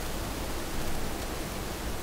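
Steady hiss of background noise between spoken phrases: room tone with a constant noise floor.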